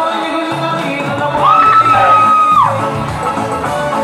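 Group of voices singing the song for a traditional Micronesian grass-skirt dance. About a second and a half in, a single high call rises, is held for about a second, then falls away.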